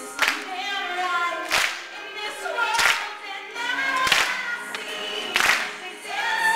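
A live band performing a song with singing over sustained keyboard notes. A strong beat hits about every second and a quarter, and the audience claps along.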